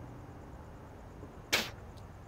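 A man spitting once: a short, sharp spit about one and a half seconds in, over a quiet background.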